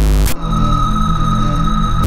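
Electronic music: a heavy hit of bass and noise at the start, then a held high tone over a pulsing bass line, with another heavy hit at the very end.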